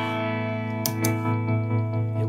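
Electric guitar, a Fender American Strat Pro through a Victory V40 Duchess valve amp, played dry with the tremolo pedal bypassed: a held chord ringing out, struck again a little under a second in.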